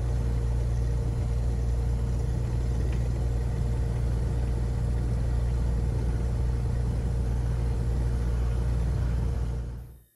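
Cessna 182's piston engine and propeller running steadily on the ground, heard from outside the aircraft as a deep, even rumble that cuts off just before the end.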